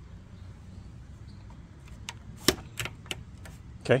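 Several sharp clicks and clacks in the second half, the loudest about halfway through: the telescoping aluminium foot of a Gorilla GLWP-55A-2 work platform being slid out and its push-button lock snapping into place.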